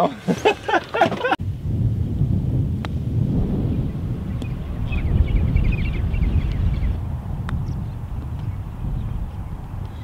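Laughter, then wind rumbling steadily on the microphone across an open golf course, with two faint clicks of a golf club striking the ball, about three seconds in and again about seven and a half seconds in.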